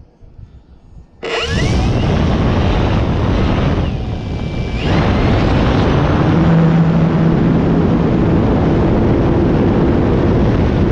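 E-flite Night Timber X RC plane's electric motor and propeller spinning up suddenly about a second in, with a rising whine, to full throttle. The power drops briefly about four seconds in, then comes back steady and loud for the takeoff roll and lift-off.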